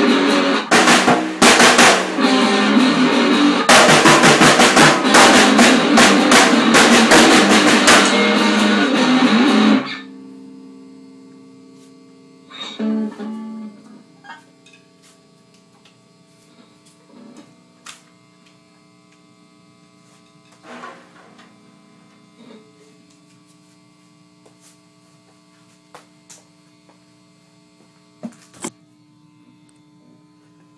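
Electric guitar and drum kit playing loud rock together, stopping abruptly about a third of the way in. What follows is a steady mains hum with a few faint, brief plucks and knocks.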